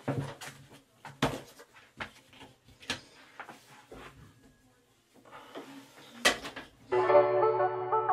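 Scattered clicks and knocks of a bathroom door being handled and a toiletry bag set down on a counter, with one sharper click near the end. Background music then starts about a second before the end.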